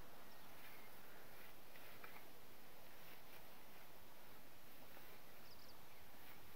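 Quiet outdoor ambience: a steady hiss with a few faint scrapes and rustles of a wooden rake working cut hay, and a faint short bird chirp near the end.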